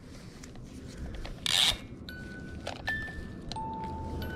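An old plastic pull-string musical crib toy: a short rasp as its cord is pulled out, then its music box starts playing high, chiming notes about two seconds in.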